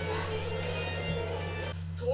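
Soundtrack music from the anime episode playing over a steady low hum. The music thins out near the end.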